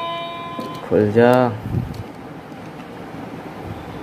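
A wireless doorbell chime's electronic tune ends on a steady note that stops under a second in. A short voice sound follows, then faint handling of the plastic doorbell unit.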